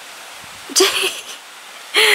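A steady low hiss, broken about a second in by a brief, breathy vocal sound from a person.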